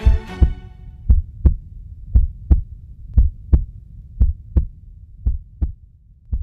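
Heartbeat sound effect: paired low thumps, lub-dub, about once a second, growing fainter toward the end.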